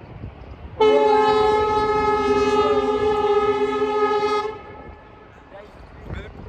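Train horn sounding one long steady blast of nearly four seconds, starting about a second in, with strong wind buffeting the microphone.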